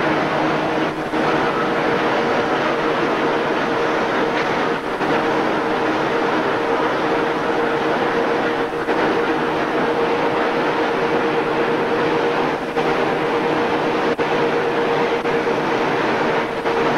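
Textile mill machinery running steadily: a loud, even mechanical din with a steady hum. The noise dips briefly about every four seconds, in step with the machine's cycle.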